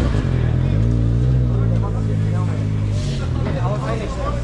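An engine running steadily with a low drone that steps up slightly about a second in, with voices in the background.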